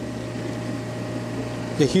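A steady low machine hum with a faint steady higher tone over it, unchanging throughout; a voice starts just at the end.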